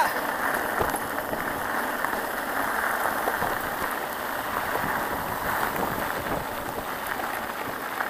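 Mountain bike tyres rolling over a gravel road, a steady rushing noise picked up by a camera on the moving bike, with some wind on the microphone.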